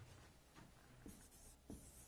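Faint marker strokes on a whiteboard, with two soft taps about a second and a second and a half in, in near silence.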